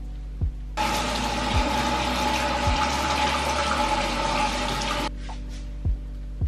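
Bathroom tap running into a sink for about four seconds, starting about a second in and shut off abruptly. Soft background music with a steady low beat runs underneath.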